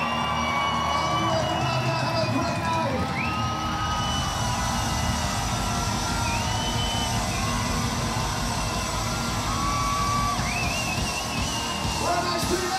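Punk band playing live in a club: electric guitars, bass guitar and drums at full volume, with the crowd cheering and shouting along.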